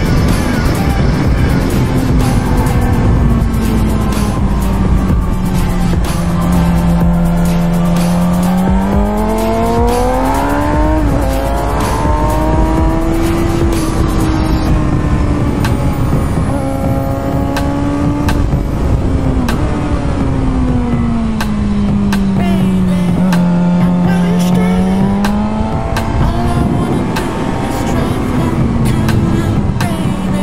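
2006 Suzuki GSX-R inline-four with a Yoshimura exhaust, heard from onboard at speed: the engine note falls, climbs and falls again as the bike brakes and accelerates through corners, with a couple of sudden short dips in pitch. Heavy wind rush on the microphone runs under it.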